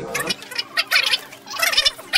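Adhesive tape being pulled off a roll in several short, irregularly spaced pulls, each a grainy rasp lasting a few tenths of a second.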